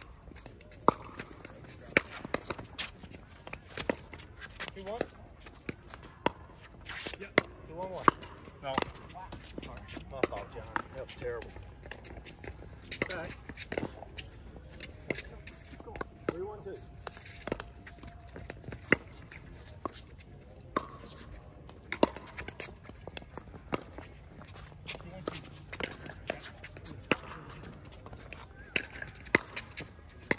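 Pickleball rally: sharp, irregular pops of paddles striking the plastic ball and the ball bouncing on the hard court, with players' voices now and then.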